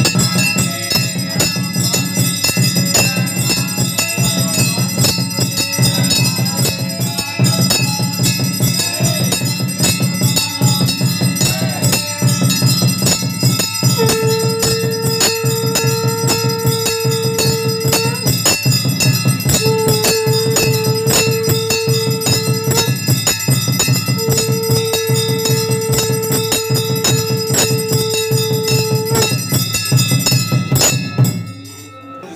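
Aarti music: bells ringing continuously over a fast, steady drumbeat. From about halfway, a single long held note sounds three times, each lasting several seconds.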